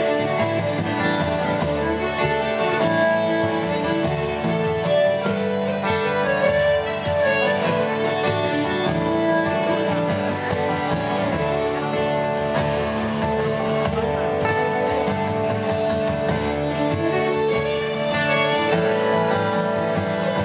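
Live instrumental folk music: acoustic guitars strummed, with a bodhrán beaten with a tipper keeping a steady rhythm.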